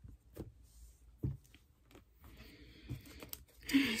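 Tarot cards being handled: a few soft taps as the deck is picked up, then a brief faint rustle of cards sliding against each other near the end.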